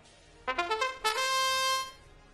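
Match-start trumpet fanfare played over the arena sound system: a quick rising run of short notes ending on one long held note, signalling that the robot match has begun.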